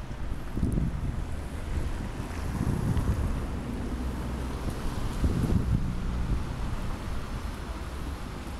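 Wind buffeting the microphone over the steady noise of street traffic below. The wind comes in swelling gusts: about a second in, around three seconds and again after five seconds.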